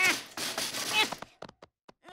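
Two short strained grunts, each falling in pitch, one at the start and one about a second in, then a few light knocks and thuds just before a brief hush.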